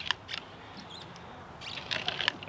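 Lopping shears cutting through a plucked turkey's neck: a sharp click at the start, then a few softer clicks. A few faint, high-pitched squeaks come about halfway through.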